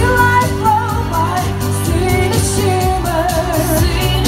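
A woman singing a pop song live into a handheld microphone over an amplified backing track with a steady bass beat, her voice sliding through runs of notes.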